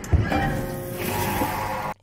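Horror film soundtrack: music under sound effects, with a heavy thump just after the start, ending in an abrupt cut just before the reactor speaks again.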